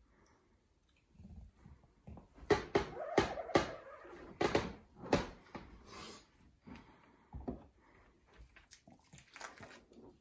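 Ink being scraped and spread across a small screen-printing mesh screen: a run of short scraping strokes, then lighter scattered clicks and rubs as the frame is handled.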